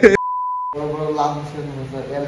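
A steady, single-pitched bleep about half a second long, starting just after the start with all other sound cut out around it: an edited-in censor bleep over a word. A man's voice follows.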